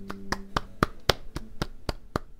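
Hand claps from one or a few people, several a second at an uneven pace, gradually getting quieter.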